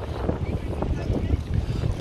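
Wind buffeting the microphone: an uneven, fluttering low rumble.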